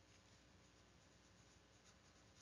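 Near silence: faint room hiss with a few tiny ticks from a stylus handwriting on a tablet screen.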